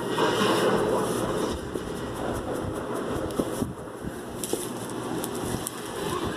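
Rustling, rumbling handling noise from a phone being moved around and rubbed against bedding, with a few faint knocks.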